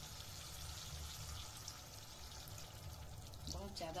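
A little water poured from a small steel bowl into a hot kadhai of masala and boiled eggs, running in quietly.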